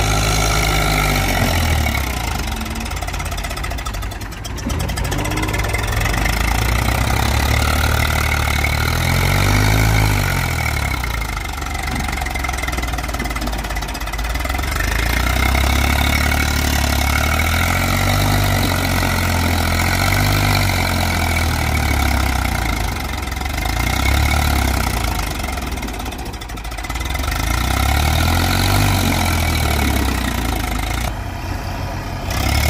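Diesel engine of an Eicher 380 tractor working under load as it hauls a trolley heaped with soil out of mud, with a JCB backhoe loader's engine running as it pushes from behind. Engine speed rises and falls several times, and the level dips briefly twice.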